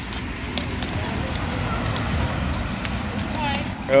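A toddler's sneakers stepping and splashing in a shallow rain puddle on asphalt, a few light steps against a steady rushing background noise.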